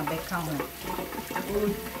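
Tap water running onto a yam as it is scrubbed with a sponge in a stainless-steel sink, under a person's voice.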